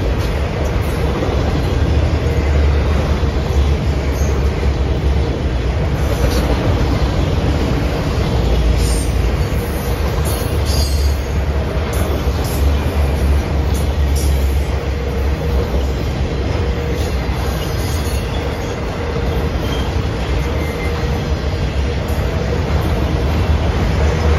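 Freight train of autorack cars rolling past close by: a loud, steady rumble of steel wheels on rail, with a few brief high wheel squeals about nine to eleven seconds in.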